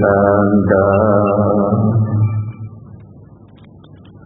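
Male voice chanting Pali paritta in long, drawn-out held notes, stepping to a new pitch about a second in and dying away at about two and a half seconds into a pause.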